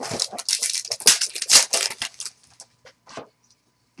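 Trading card packs and cards being handled: about two seconds of dense crinkling and rustling, then a few scattered clicks and rustles near the end.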